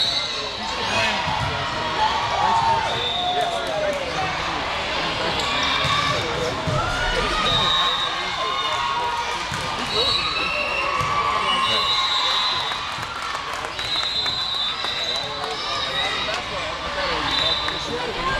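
A volleyball being hit and bouncing, with many short, high squeaks from players' shoes on the court floor, over continuous chatter from spectators.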